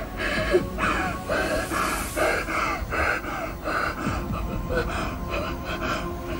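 A woman crying, sobbing in short, repeated gasping breaths with brief wavering whimpers.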